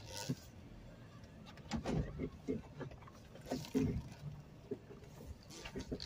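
Jeep Wrangler body and suspension giving scattered light knocks and creaks as it inches backward over rough trail ground, under a faint low running sound.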